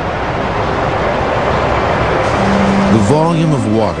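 Water of Niagara Falls rushing over the drop: a loud, steady wash of noise that swells slightly. A man's narrating voice comes in over it in the last second or so.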